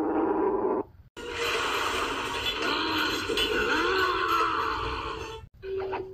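Cartoon soundtrack heard from a TV: a short burst, then about four seconds of noisy sound effects with wavering, gliding pitches over music, ending with a held low note.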